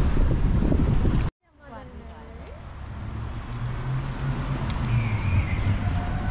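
Wind buffeting the microphone by the open water, cutting off abruptly just over a second in. A quieter, steady low hum then fades in and slowly grows louder.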